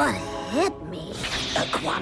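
Sound effect of a robot coming back online: two quick rising-and-falling pitch sweeps, over the background score, with a voice starting near the end.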